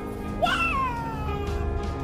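A single high, drawn-out cry about half a second in, rising sharply and then sliding down over about a second, over background music.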